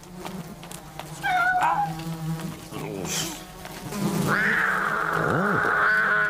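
Cartoon cat voicing a wavering, pained cry about a second in and a long rasping yowl over the last two seconds, with a steady buzz of flies circling it throughout.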